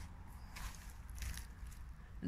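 Faint rustling and a few soft crackles of footsteps and camera handling on dry forest-floor litter, over a low rumble.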